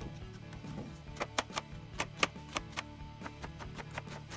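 Chef's knife chopping a peeled onion on a plastic cutting board: a run of quick, uneven knife strikes starting about a second in, over steady background music.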